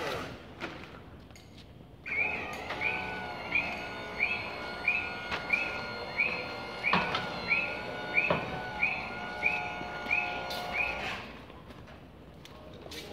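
Scissor lift running, a steady motor hum with its motion alarm beeping over and over, about one and a half beeps a second, starting about two seconds in and stopping near the end. Two sharp knocks come partway through.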